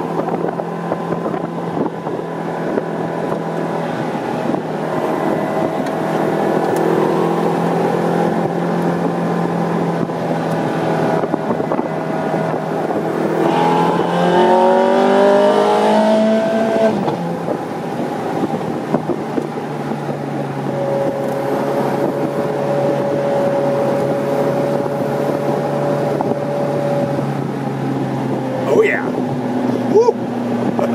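Ferrari 430 Scuderia Spider 16M's 4.3-litre V8 heard from the open cockpit while driving, over wind and road noise. Mostly a steady engine note, with a quick rising rev about halfway through as the car accelerates.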